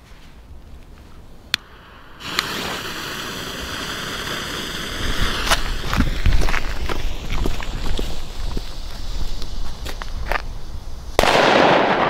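Fuse of a Funke Super Böller 1 firecracker lit and burning with a steady hiss for about nine seconds, then the firecracker going off with one sharp bang near the end.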